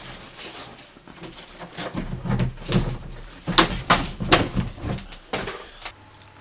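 Rummaging in a cupboard: items shifted and handled, with a run of sharp clicks, knocks and rustles from about two seconds in.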